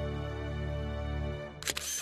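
Background music holding a sustained chord. Near the end, a camera-shutter sound effect cuts in as two quick, loud clicks, louder than the music.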